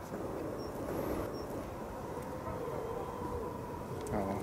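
Steady low outdoor background rumble with no distinct event, and two faint short high chirps in the first second and a half.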